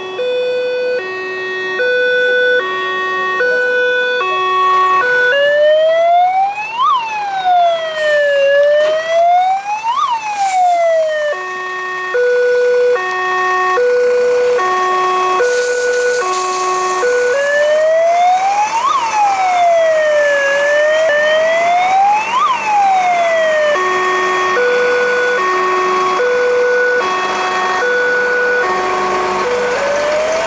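Fire engine's electronic siren switching between modes: a two-tone hi-lo pattern alternating about twice a second, and a rising-and-falling wail with about three seconds per sweep, back and forth several times.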